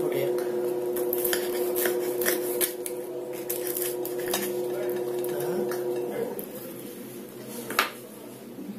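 Fork and knife cutting through a crisp, deep-fried chebureki on a ceramic plate: repeated clicks and scrapes of metal on the plate and the crackle of the fried crust, over a steady low hum that stops about six seconds in.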